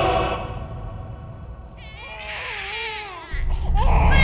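Film soundtrack: tense music fades out, then a high, wavering wailing voice rises and falls for about two seconds before the music swells back in near the end.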